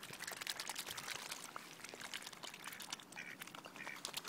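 Mute swans feeding at the water's edge, bills dabbling and sifting in the shallow water: a dense, irregular run of small wet clicks and slurps.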